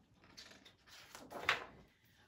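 Faint paper rustling as a picture book's page is turned, with a louder swish about one and a half seconds in.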